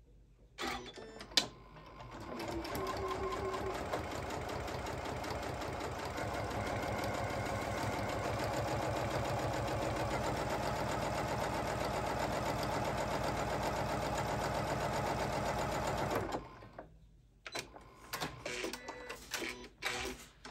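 Computerized sewing machine stitching a seam: after a few light clicks, the motor starts about two seconds in and runs steadily with a fast, even needle rhythm for about fourteen seconds, then stops suddenly. A few light clicks follow.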